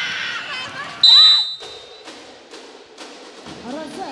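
Volleyball referee's whistle, one shrill blast of about half a second, a second in, ending the rally. Before it, crowd voices cheering in the arena; after it, scattered thumps and claps.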